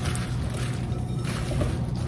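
Oil-coated halved Brussels sprouts being tossed with a spatula in a mixing bowl: soft wet rustling and squishing, over a steady low hum.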